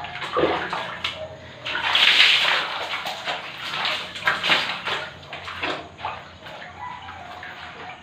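Bucket bath: water scooped from a bucket with a plastic dipper and poured over the body, splashing in several pours, the longest and loudest about two seconds in.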